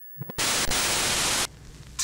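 Static sound effect: a loud burst of even, TV-static hiss that starts suddenly just under half a second in, lasts about a second and cuts off sharply into a much fainter hiss.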